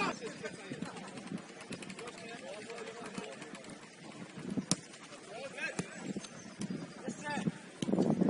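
Football being played outdoors: scattered light knocks and footfalls of players, one sharp knock a little past halfway, and faint distant shouts.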